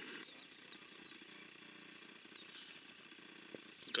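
Faint rural outdoor ambience: a low, even background with a few faint, short high chirps and one soft click about three and a half seconds in.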